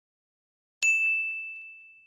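A single bell-like ding sound effect of a subscribe-button animation, coming in sharply a little under a second in, ringing on one clear high tone and fading away over about a second and a half.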